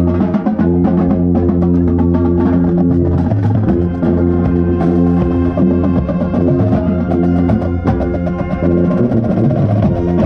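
Drum corps brass and drumline playing their show. The contrabass bugle at the microphone holds low notes under rapid snare and drum strikes.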